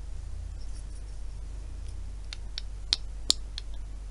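About five small plastic clicks and taps in the second half, the loudest a little past three seconds in, from handling a loose mineral pigment jar with its black screw cap and sifter lid. A steady low hum runs underneath.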